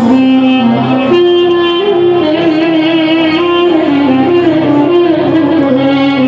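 Live band music played loud through a concert sound system, led by a melody that steps up and down in pitch over a full accompaniment.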